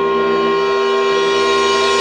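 A small wind band of flute, saxophones, trumpets and low brass holds one loud, sustained chord. The chord is steady throughout, with no change of note.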